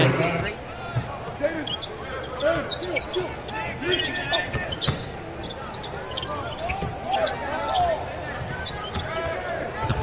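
Live basketball court sound: a ball dribbling and sneakers squeaking on the hardwood, with scattered voices of players calling out. The short chirps and knocks repeat irregularly throughout.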